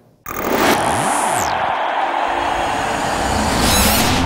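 Sound effects for an animated title graphic: a sudden loud rush about a quarter-second in, then a steady whooshing roar with sweeping tones that fall and rise, under a music bed.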